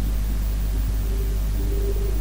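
Steady low drone of a jet airliner's cabin with the engines at taxi power, before the takeoff roll begins.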